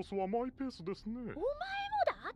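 Dialogue from a Japanese-dubbed anime episode: characters speaking in high, animated voices, one of them rising into a long, drawn-out syllable in the second half.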